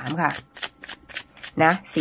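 Tarot cards being shuffled by hand: a rapid run of flicks, about eight a second, lasting about a second between spoken words.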